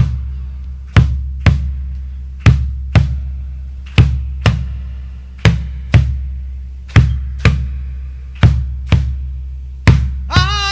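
A deep drum playing alone in a slow, repeating vidala beat: two strikes half a second apart, then a one-second gap, with each hit ringing low, over a faint steady low hum.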